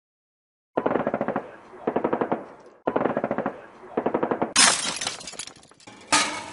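Intro sound effect: four short bursts of rapid, evenly spaced clicking about a second apart, then a louder crashing burst about four and a half seconds in that fades away.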